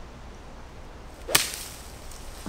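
A golfer's pitching wedge strikes a ball off leaf-covered ground: one sharp crack of the club hitting the ball, about a second and a third in.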